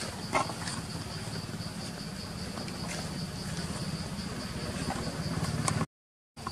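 Steady high-pitched insect chorring, typical of crickets or cicadas, over a low rumble, with a sharp click about half a second in. The sound cuts out abruptly just before the end.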